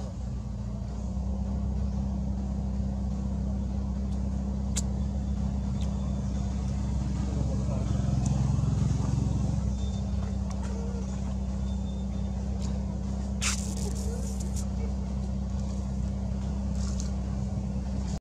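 A steady low engine hum, as from a motor idling nearby, with faint voices in the background. There is a sharp click about five seconds in and a short burst of noise about thirteen seconds in.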